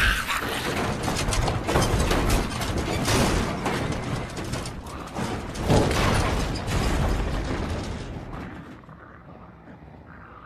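Dense mechanical clattering and knocking, with a louder thump about six seconds in, fading away over the last two seconds.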